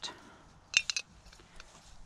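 A quick cluster of light metallic clicks a little under a second in, from a tiny folding camping stove being handled against the valve of a screw-thread gas canister.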